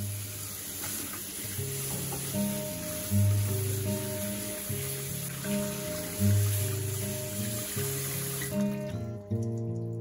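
Tap water running into a stainless steel sink and through a metal colander as dried anchovies are rinsed by hand, stopping about a second and a half before the end. Background music with a steady bass line plays throughout.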